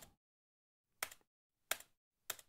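Two short, faint clicks at a computer desk, about a second in and again near the end, with near silence between: mouse or key clicks while editing on screen.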